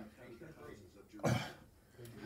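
A man gives one short, loud cough about a second in, over faint speech in the background.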